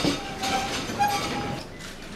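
Chairs being pulled and rolled across the floor as a group of people sit down around a conference table, with two short squeaks about half a second and a second in. The shuffling dies down near the end.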